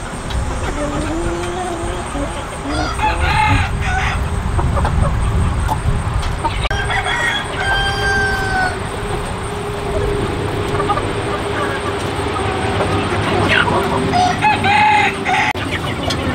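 A flock of Hmong black-meat chickens clucking, with a rooster crowing. The calls come in separate bursts, about three seconds in, around seven to eight seconds, and again near the end.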